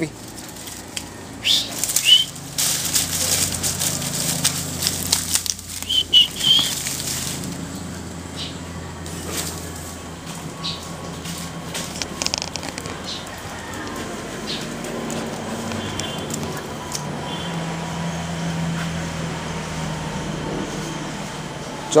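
Dry dead leaves and twigs rustling and crackling as a dog pushes its way through a leaf pile, busiest in the first several seconds and lighter afterwards. A couple of short high squeaks come through early on.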